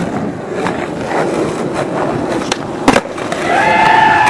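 Skateboard wheels rolling on pavement with a continuous rumble, with sharp clacks of the board hitting the ground, the loudest just before three seconds in. A person starts shouting near the end.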